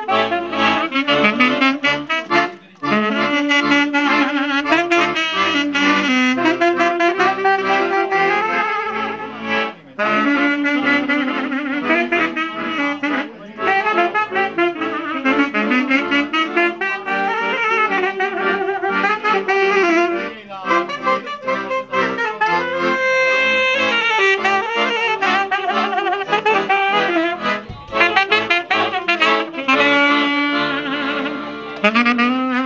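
Two saxophones and an accordion playing a fast Romanian folk wedding tune live, with quick running melody lines throughout.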